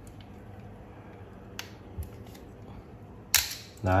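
Plastic latches on a Braun Series 5 shaver's housing being worked loose by hand: a couple of small clicks, then one loud, sharp snap near the end as a part comes free.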